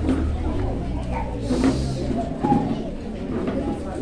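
Indistinct voices of several people talking in a hall, over a low rumble.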